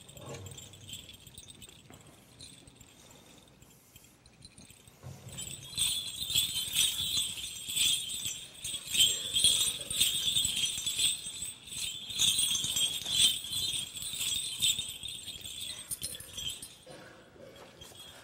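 Bells on the chains of a Byzantine censer jingling as it is swung, in a run of quick jangling strokes that starts about five seconds in and stops shortly before the end, after a quiet start.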